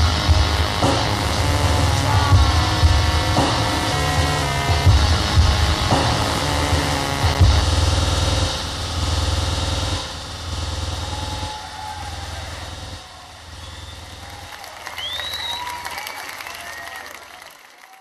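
Live concert music with a heavy bass line, which stops about eight seconds in; after it comes fainter crowd noise from the audience that fades away near the end.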